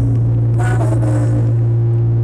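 Loud amplified live music through a venue PA, a steady held bass note with a voice coming over it briefly about half a second in.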